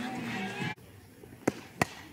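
Faint background voices cut off abruptly, then two sharp knocks about a third of a second apart, the second of them an aluminium softball bat striking a pitch.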